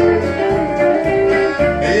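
Band music between sung lines: guitar to the fore over a steady beat in the bass. The vocal comes back in right at the end.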